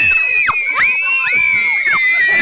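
A group of young girls screaming and shouting together, several high-pitched voices overlapping, some held and some falling away.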